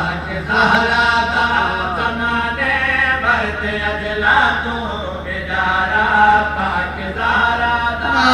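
A man's voice chanting a melodic religious recitation into a microphone, in several long held phrases with short breaks between them.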